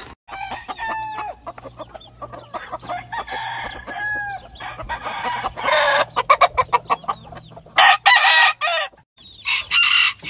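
Chickens clucking and squawking, with roosters crowing, in many short calls throughout and louder bursts about six and eight seconds in. The sound breaks off briefly near the start and again about nine seconds in.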